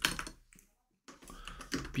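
Typing on a computer keyboard: a short run of keystrokes, a pause of about half a second, then more keystrokes.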